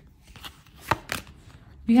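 A deck of tarot cards being shuffled and handled, with cards pulled out by hand: a few short, sharp card snaps, the loudest about a second in.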